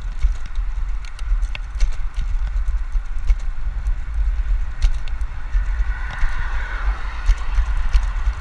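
Wind buffeting a handlebar-mounted action camera's microphone as a road bike rides along a concrete path: a steady low rumble with irregular clicks and knocks from the bike and path. A higher hiss swells in the last few seconds.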